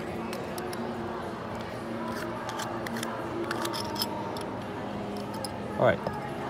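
Small metallic clicks and scrapes of a threaded stainless-steel watch case back being unscrewed by hand and lifted off. They are scattered short ticks, busiest in the middle, over a steady low background hum.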